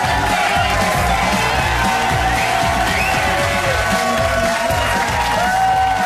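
Studio audience applauding and cheering over upbeat music.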